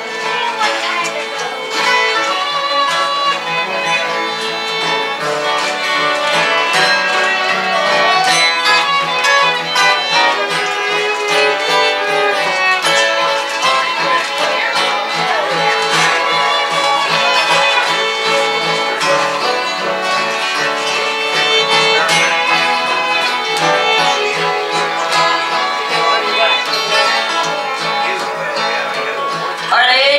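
Instrumental break of a country song: a fiddle takes the lead, with sliding notes, over strummed acoustic guitars.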